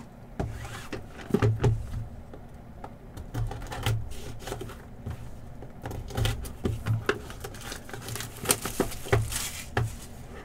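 Cardboard trading-card hobby box being handled and opened by hand: scattered knocks, taps and scrapes of card stock on the table, with a cluster of sharper clicks near the end.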